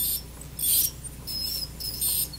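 Satelec P5 Neutron piezoelectric ultrasonic scaler with the H4L perio tip working against a plastic typodont tooth, giving intermittent high-pitched scratchy chirps and brief squealing tones, several in two seconds. The squeal comes from the tip's contact with the typodont and is not heard on real teeth.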